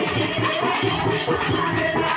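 Hand-held frame drums beaten in a quick, steady folk rhythm, about four to five strokes a second, with a jingling rattle over the beat.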